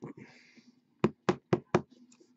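A trading card in a clear rigid plastic holder being handled: a soft thump and a brief rustle, then four quick sharp knocks about a quarter second apart.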